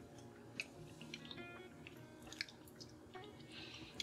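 Faint mouth sounds of whiskey being sipped and swished around the mouth, with a few small wet clicks, over soft background music.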